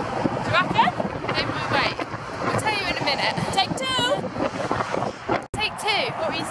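Women's voices talking over wind buffeting the microphone and the steady rush of motorway traffic. The sound cuts out for an instant near the end.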